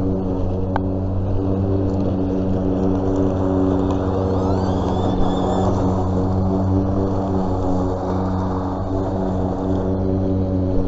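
EGO cordless electric push mower running steadily, its motor and blade giving a constant even hum as it cuts grass, with one short click about a second in.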